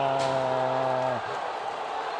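A TV commentator's long, drawn-out goal shout held on one steady pitch, breaking off about a second in and leaving fainter crowd noise.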